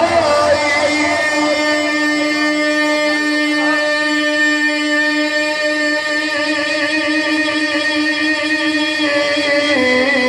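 A man's voice holding one long sung note of naat recitation for about nine seconds through a microphone, with a slight waver partway through, then stepping down in pitch near the end.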